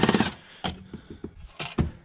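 A screwdriver working at a car's plastic speaker grille and interior trim panel: a brief fast run of clicks at the start, then scattered light clicks and knocks.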